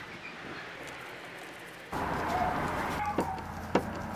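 Screwdriver working the screws out of a car's plastic door trim panel: a few light clicks over background noise, which gets louder about two seconds in.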